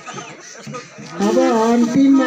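A small folk instrument played at the lips: a wavering pitched note that turns loud about a second in and settles into a steady held tone.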